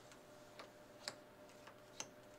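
Faint, irregular clicks and taps of small cards being set down and slid into place on a tabletop, the loudest about a second in.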